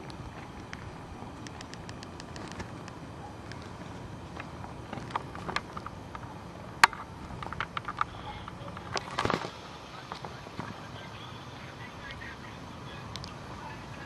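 Low steady hum with scattered faint clicks and knocks from a phone and camera being handled while a call is placed; one sharp click stands out about seven seconds in.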